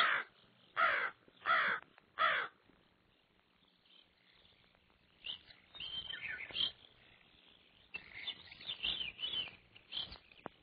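Three loud, harsh animal calls about two-thirds of a second apart, each falling in pitch. They are followed by a quiet stretch, then fainter, scattered chirping calls through the second half.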